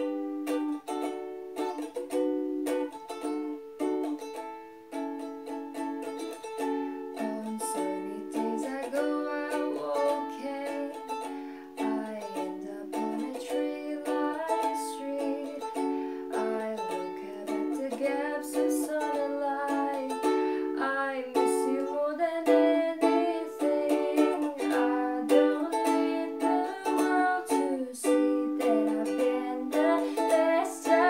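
Ukulele strummed in steady chords, with a sung vocal line over it from about nine seconds in.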